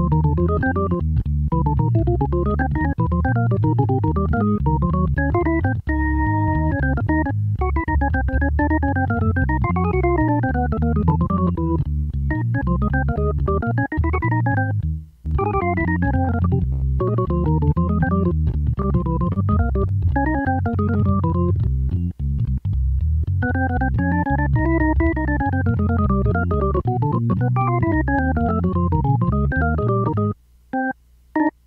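Jazz organ solo on a two-manual drawbar organ: fast right-hand runs rise and fall over a steady left-hand bass line. A held chord comes about six seconds in, and there is a brief break near fifteen seconds.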